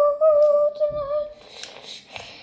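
A person humming one high, held note with a slight waver, stopping about one and a half seconds in, followed by a faint click.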